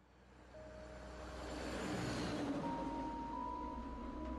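Road traffic noise fading up and swelling to a peak about halfway through, as of a vehicle passing. Faint held notes of ambient music enter underneath.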